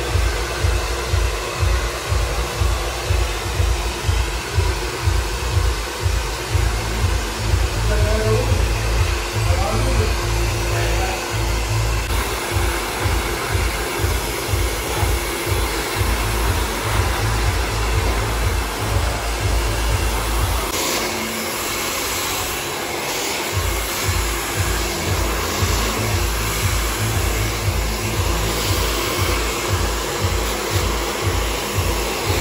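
Handheld hair dryer running steadily as wet hair is blow-dried, under background music with a steady beat. About 21 seconds in, the beat drops out for a couple of seconds and the dryer's hiss turns brighter.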